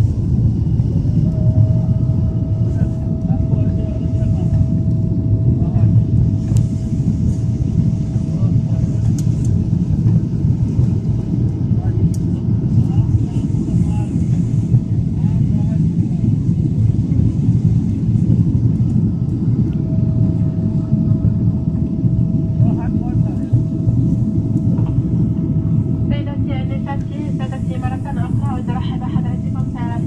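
Cabin noise of an Emirates Boeing 777-300ER climbing after takeoff: the loud, steady roar of its GE90 engines and the airflow, with a faint steady whine over it that drops out for a while in the middle. Voices come in near the end.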